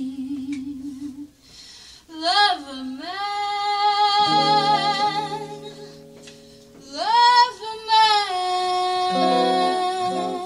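Live jazz ballad: a woman's voice swoops up into a long held note with vibrato about two seconds in, and into another about seven seconds in, over soft piano and bass chords.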